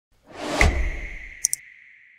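Logo-intro sound effect: a whoosh that swells in, with a low hit about half a second in, then a ringing high tone that slowly fades. Two quick clicks come about one and a half seconds in.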